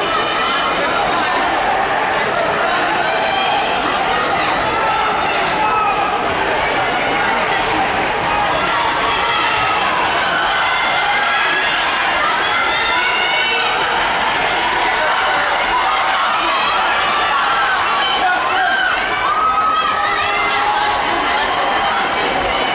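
Crowd of spectators in an indoor track arena shouting and cheering runners on during a race, many voices overlapping in a steady din.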